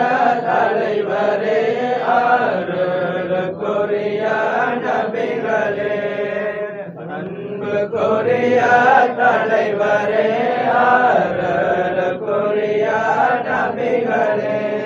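Men chanting a Sufi devotional song in praise of the Prophet, voices only with no instruments, with a brief lull about seven seconds in.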